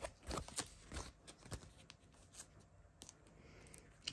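Plastic nine-pocket binder pages crackling and rustling faintly as they are turned. A quick cluster of sharp crinkles comes in the first two seconds, then only scattered softer ones.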